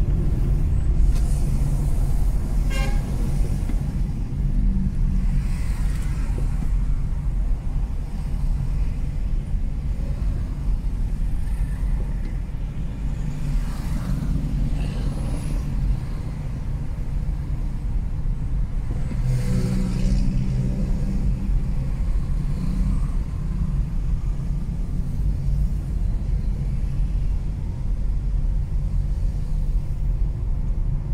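Steady low road and engine rumble inside a Mazda3's cabin, with a vehicle horn tooting briefly about three seconds in and again, longer, around twenty seconds in.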